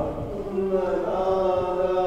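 A slow devotional hymn sung in long held notes, typical of the singing during communion at Mass.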